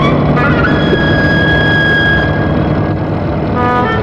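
Vintage car engine running with a steady low rumble, under film music. A high note is held for about two seconds, and short melodic notes come in near the end.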